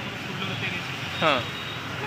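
Steady background hum of a busy street market, with a single short spoken "haan" a little past the middle.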